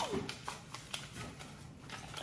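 Paper cards rustling and tapping in a glass bowl as a child's hands rummage through them: a string of faint, short clicks and crinkles.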